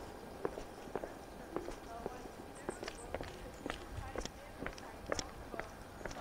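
Footsteps of two people walking down concrete outdoor steps, sharp short steps about every half second.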